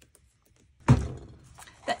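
A single dull thump about a second in, from the wooden embroidery hoop being handled on the craft mat.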